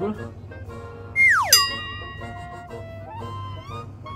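Light comic background music with a cartoon sound effect: a quick falling glide about a second in, ending in a sharp, bright ringing tone that holds for a moment.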